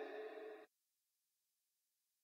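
Near silence: a faint, steady-toned tail fades and cuts off abruptly about two-thirds of a second in, followed by dead digital silence.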